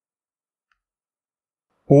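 Near silence, then a man's voice begins speaking near the end.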